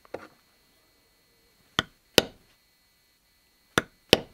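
A mallet strikes a camouflage leather-stamping tool into a holster's leather on a granite slab, giving short sharp knocks. Two come close together a little under two seconds in, and a third near the end.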